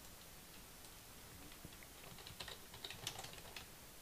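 Faint computer keyboard typing: a short run of keystrokes, a couple of words typed, starting a little after two seconds in and lasting about a second and a half.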